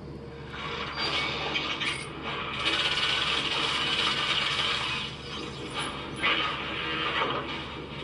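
Film battle-scene sound effects: a dense mechanical clatter and noise from a robot war scene, louder from about two and a half seconds in.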